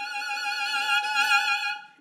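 Solo violin holding one long bowed note with vibrato, swelling in a big crescendo on a single unbroken bow stroke, then stopping shortly before the end.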